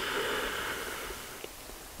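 A man's forceful bellows-breathing exhale, a steady rush of air that tails off about a second and a half in.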